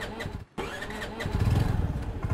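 Motor scooter engine running, its low, pulsing rumble growing louder about a second in.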